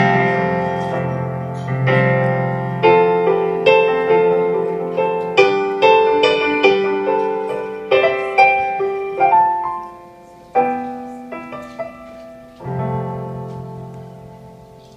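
Solo keyboard played with a piano sound in an instrumental outro: struck chords and melody notes that ring and decay. It thins and quiets about ten seconds in, then ends on one last chord that is left to fade.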